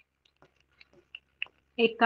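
Faint, scattered clicks of a pen against the writing board as a word is written, about five light ticks over a second and a half. A woman's voice starts speaking near the end.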